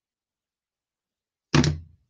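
Silence, then a single short, loud thump about one and a half seconds in that fades within half a second.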